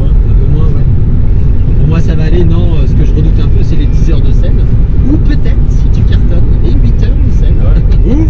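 Steady low road and engine rumble inside a moving car's cabin, with men's voices talking over it at times.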